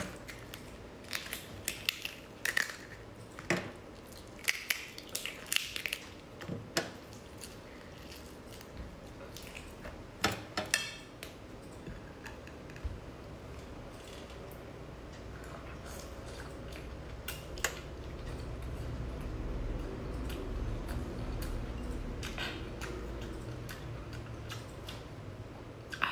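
The shell of a large cooked prawn being cracked and pulled apart by hand, heard close up as sharp, irregular crackles and snaps through the first half. After that it turns to a softer, steadier sound of handling and mouth noise.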